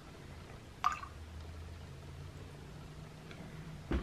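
Almond milk creamer poured from a carton into a mug of coffee: a faint trickle and drip of liquid, with one brief sharp sound about a second in.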